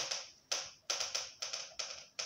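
Marker pen writing on a whiteboard: a quick run of short, separate strokes, about three a second, as a word is written out letter by letter.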